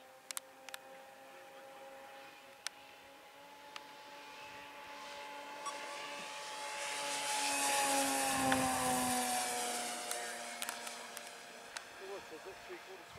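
Twin-engine radio-controlled model warbird flying past. Its steady engine note grows louder to a peak about two-thirds through, then drops in pitch as the plane passes and moves away. A few sharp clicks come near the start.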